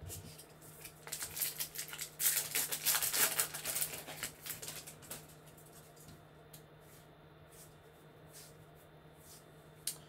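Hands handling a pack of baseball trading cards: a few seconds of rapid rustling and clicking as the pack is opened and the cards are pulled out and slid against each other, then only occasional soft ticks as the cards are flipped.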